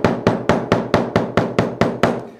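Small hammer tapping rapidly and evenly on a hand-stitched leather seam on the workbench, about seven light strikes a second, stopping just before the end. The stitches are being tapped down flat so they don't sit proud of the leather.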